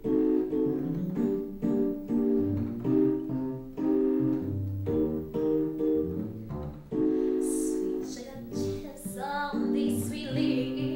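Electronic keyboard playing a soul intro in piano tone: chords struck in a steady rhythm over left-hand bass notes. A sung voice comes in near the end.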